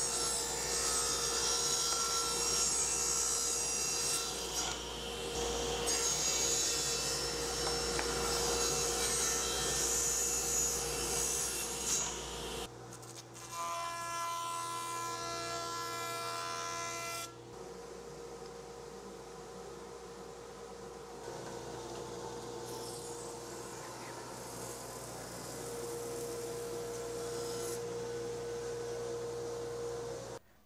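A table saw ripping a walnut board to width for about the first twelve seconds. After a sudden change, a jointer runs with a steady whine as a short walnut piece is fed across it, and quieter machine running follows.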